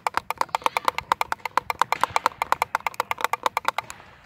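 Small hand-twirled pellet drum rattled quickly back and forth, its beads striking the drumheads in a fast, even clicking of about ten strikes a second.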